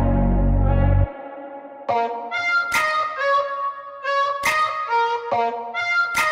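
Background music: a loud, sustained low chord that cuts off suddenly about a second in, followed by a melody of short notes that each start sharply and die away, like plucked strings.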